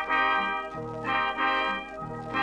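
Swing dance band playing an instrumental passage on a 1938 recording, with brass playing two held chords separated by a short break.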